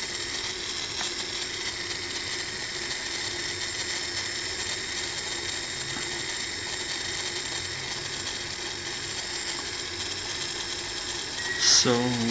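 Small DC motor running steadily under 555-timer PWM control, a continuous mechanical whir with thin high-pitched tones, its duty cycle being turned down from full output.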